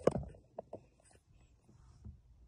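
A single sharp knock as a tiny plastic puzzle cube is set down on a wooden floor, followed by a few faint ticks within the next second.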